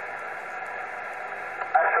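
Steady SSB receiver hiss from a Yaesu FT-857D on 70 MHz upper sideband, a narrow band of noise with no signal on it. Near the end the distant station's voice comes in through the radio's speaker, thin and band-limited.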